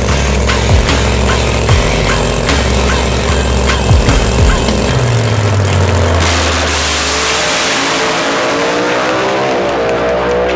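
Background music with a steady beat. About five to six seconds in, a supercharged Camaro drag car's engine comes up loud under full throttle as it launches and runs down the strip, its pitch rising.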